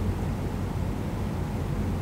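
A steady low hum with an even background hiss, and no other sound.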